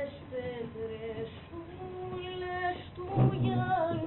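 A woman singing slow, long-held notes with a slight waver, swelling louder about three seconds in.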